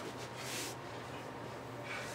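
Two people exercising on a carpeted floor: a short hissing burst about half a second in and a fainter one near the end, over a low steady hum.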